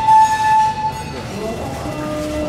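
Whistle of the boardwalk's C.P. Huntington replica train, one steady note lasting about a second, the loudest thing here, followed by fainter lower tones.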